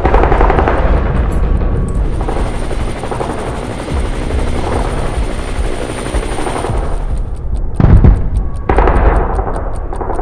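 Dense battle sound effects: rapid machine-gun fire and helicopters mixed over a music score, with a loud low impact about eight seconds in.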